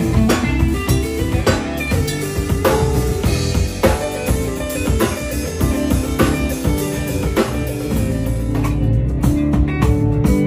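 Live band playing an instrumental passage: electric guitar over a steady drum-kit beat, with bass guitar and keyboard.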